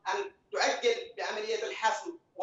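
A man speaking Arabic in short phrases with brief pauses; only speech.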